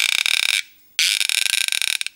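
Home-made cup roarer: a rosined string squeaking as it drags around the groove of a wooden dowel, the squeak amplified by a small plastic canister tied to the string. Two loud, high, buzzing squeals, each a little under a second, with a short break between them.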